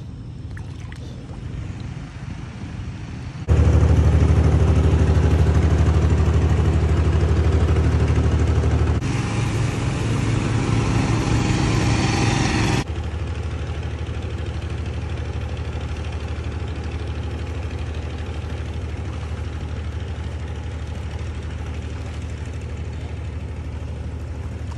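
Small fishing boat's engine running steadily with a low drone, much louder from about three and a half seconds in until it drops back abruptly near the middle.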